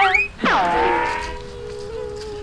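A woman wailing in an exaggerated, drawn-out cry: a sharp drop in pitch about half a second in, then one long held note that slowly fades.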